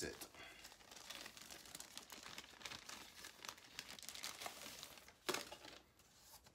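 Quiet crinkling and crackling of packaging being handled as the controller is taken out of its box, with one louder rustle about five seconds in.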